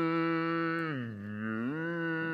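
A plastic vuvuzela horn blown in one long, steady blast. Its pitch sags lower about a second in, then climbs back up.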